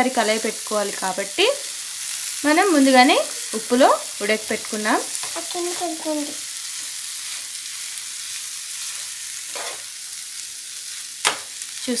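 Cluster beans and scrambled egg frying in a nonstick pan, stirred with a steel spoon: a steady sizzle with squeaky, gliding scrapes of the spoon against the pan through the first half, then the sizzle alone, with one sharp click near the end.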